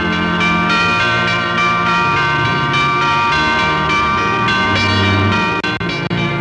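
Orchestral cartoon score with bells pealing, struck again and again over sustained low orchestral notes.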